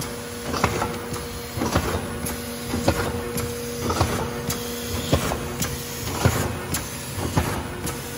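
D&K Europa System B2 film laminating machine running with sheets going through its rollers: a steady motor hum under repeated mechanical clacks, about two a second.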